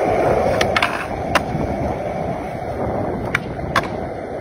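Skateboard wheels rolling on rough concrete with a steady rumble, broken by several sharp clicks, a pair about half a second in, one more after a second, and two near the end.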